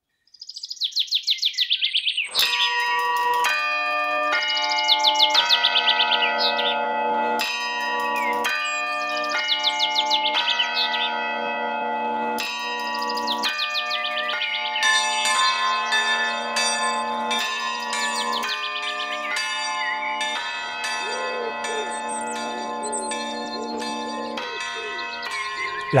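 Birds chirping in rapid trills, alone at first, then over a sequence of ringing bell-like chords that begins about two seconds in and changes roughly once a second.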